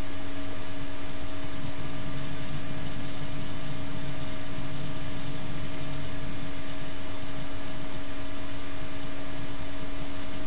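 Steady, even hiss with a constant low hum, unchanging throughout and with no distinct clicks or knocks.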